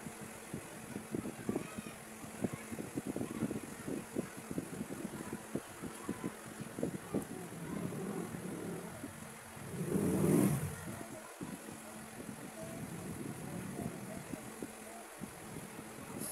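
A motor vehicle passing, swelling to its loudest about ten seconds in, over steady background noise with small low knocks.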